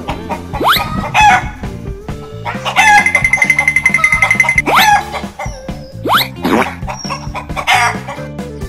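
Chicken squawking and clucking sound effect, with sharp rising squawks near the start and twice more later and a rapid run of clucks in the middle, over background music.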